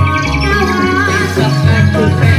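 Live traditional gamelan-style music accompanying a reog dance: mallet-struck metallophones and drums under a wavering high melodic line.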